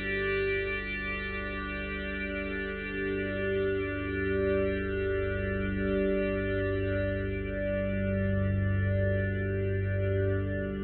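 Instrumental rock intro, without vocals: electric guitar through chorus and echo effects playing long held notes that change slowly, over a low bass.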